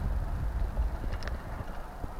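Mountain bike rolling over a rough dirt trail, heard from a camera on the rider or bike: a low rumble of wind and trail vibration with irregular clattering and knocks, and a sharp click about a second in. The rumble eases off near the end.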